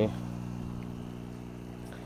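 Steady low electric hum of the hydroponic system's air pump running continuously, growing slightly fainter.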